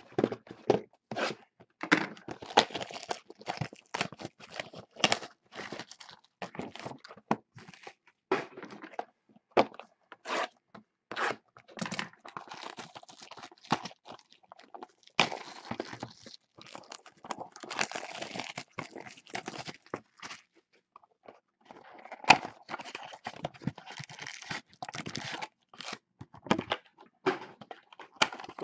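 Scissors cutting and hands tearing plastic shrink-wrap off cardboard trading-card boxes, then boxes and foil packs handled: an irregular run of crinkling, tearing, scraping and sharp clicks, with a short lull about three quarters of the way through.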